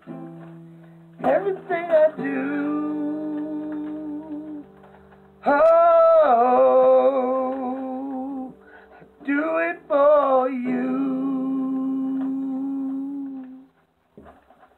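Acoustic guitar chords strummed and left to ring, struck about a second in, again at five and a half seconds and twice around nine to ten seconds, with a man's wordless humming wavering over them. The last chord rings out and fades just before the end.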